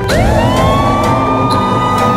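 A siren winding up: its pitch rises quickly in the first half second, then holds at one steady high note, over background music.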